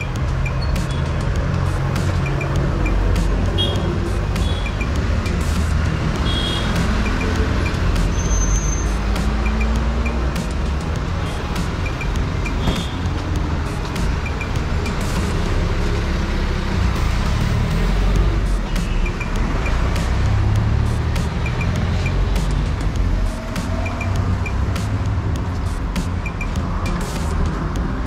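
Road traffic noise: a steady rumble of passing vehicles and motorbikes, with occasional short high-pitched beeps.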